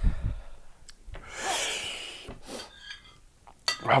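A person breathing out hard and noisily, with a long breathy rush about a second in: a reaction to the burn of an extremely hot vindaloo. Faint clicks of cutlery on a plate.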